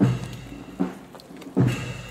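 Brass band striking up suddenly and loudly, with strong low notes about every 0.8 seconds under held higher tones.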